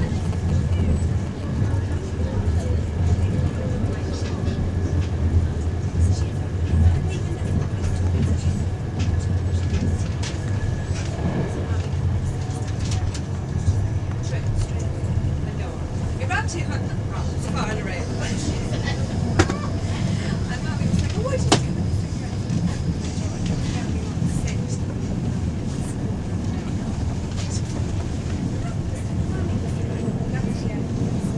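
Steady low rumble of a moving vehicle heard from inside the passenger cabin, with scattered clicks and rattles and faint indistinct voices partway through.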